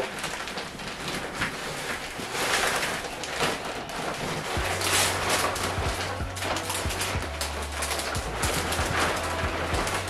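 Reptile soil pouring from a crinkling plastic bag into a plastic bucket, a steady rustling trickle. A low steady bass hum joins about halfway through.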